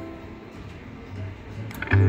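Slot machine's electronic tones playing while its reels spin, with two sharp clicks shortly before the end as the reels come to a stop.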